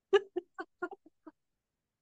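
A woman laughing: a quick run of about six short "ha" bursts, each fainter than the last, dying away about two-thirds of the way through.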